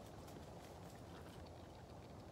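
Faint, irregular hoof steps of a horse on soft dirt, over a steady low rumble.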